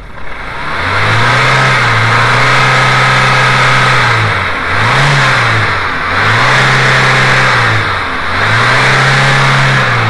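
VW Mk2 1.8 L four-cylinder engine revved from idle and held, four times: a long rev, a quick blip, then two more held revs, each rising and dropping back. It is being run up to listen for noise from the timing belt tensioner.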